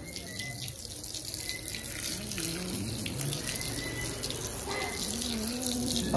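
Water running steadily from a garden hose, splashing onto a dog's wet coat and the wet concrete floor as the dog is rinsed during its bath.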